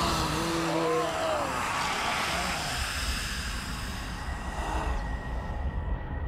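An old woman's voice chanting in long, wavering tones for about the first second and a half, fading into a low rumbling drone with a hissing texture and a faint steady high tone from about two seconds in.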